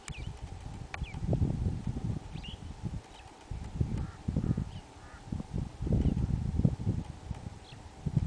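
Wind buffeting the microphone in irregular gusts of low rumble, with a few faint short bird chirps over it.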